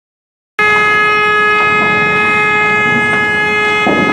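A loud, steady drone made of several unchanging tones over a rumbling noise bed, cutting in abruptly about half a second in; its lowest tone stops just before the end while the higher tones carry on.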